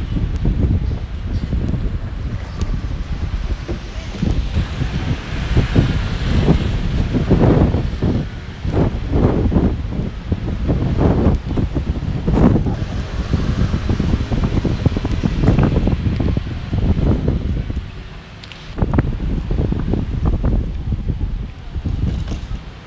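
Wind buffeting the microphone, loud and uneven throughout, easing briefly near the end.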